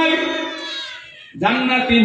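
A man's voice, amplified through a microphone, holding a long chanted note in a sermon. The note fades and its pitch falls away, breaks off briefly, and the chanting resumes about one and a half seconds in.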